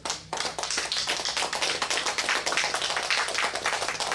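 Audience clapping, many hands at once, breaking out just after the start and carrying on steadily.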